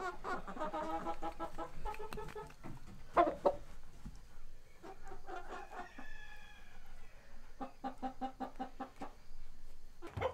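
Chickens clucking in a coop, a mix of short calls with a longer drawn-out call around the middle and a quick run of clucks near the end.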